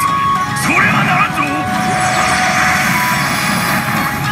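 Sound from a PA Hana no Keiji pachinko machine's cutscene: a brief voice line near the start, then a swelling rushing whoosh over a steady background drone as the scene changes.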